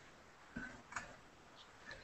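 Near silence with two faint short clicks, about half a second apart, a little before the middle.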